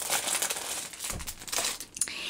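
Rustling and crinkling of a fabric flower being picked up and handled close to the microphone, dying down towards the end.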